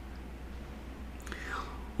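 A pause in speech filled by a low, steady hum, with a brief, faint vocal sound falling in pitch about a second and a half in.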